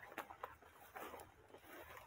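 Near silence, with a few faint rustling ticks from someone walking through tall weeds.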